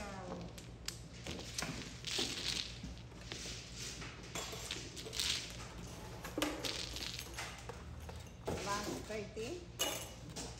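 Mahjong tiles clattering and knocking together as they are pushed into the middle of the table and shuffled by hand, a continuous rattle of many small clicks.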